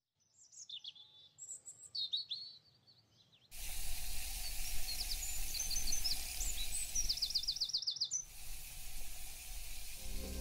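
Small birds chirping with short, high calls and sweeps, then from about three and a half seconds in a steady hiss of background noise with a faint hum underneath. The chirping goes on over the hiss, with a fast trill of repeated notes near the end.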